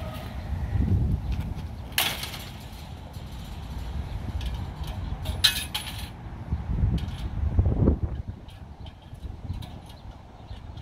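Two sharp, ringing impacts about three and a half seconds apart, as 80 mph baseballs from a pitching machine meet the bat or the cage. A low rumble comes and goes between them.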